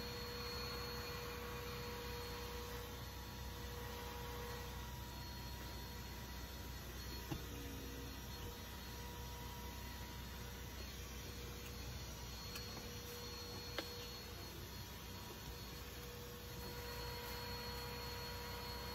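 A steady low hum with faint constant high tones, and a couple of light knocks about a third of the way in and near three-quarters through.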